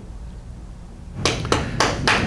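Quiet room hum, then from about a second in a few sharp, irregular claps from the audience.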